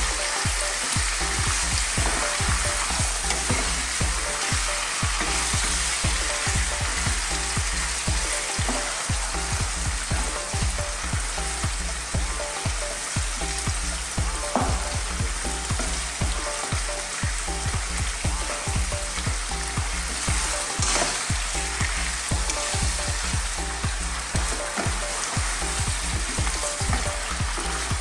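Chicken pieces frying over high heat in a saucepan of hot spiced oil, sizzling steadily with constant small crackles and pops. A wooden spatula stirs through them the whole time.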